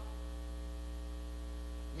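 Steady low electrical mains hum in the microphone and sound system.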